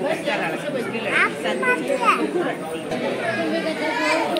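Background chatter of several people talking at once in a hall, with two brief high-pitched voice sounds about a second and two seconds in.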